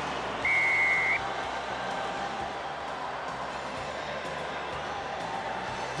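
Referee's whistle blown once about half a second in, a single steady high tone lasting under a second, signalling the try. Steady crowd noise from the stadium runs underneath.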